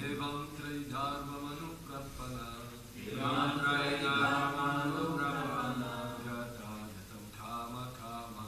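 Voices chanting a Sanskrit verse in a slow, melodic recitation, in several phrases, the longest and loudest starting about three seconds in.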